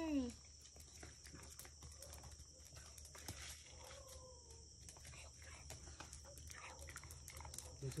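Steady high-pitched chirring of crickets, with faint small scuffs and clicks and a brief faint hum about four seconds in.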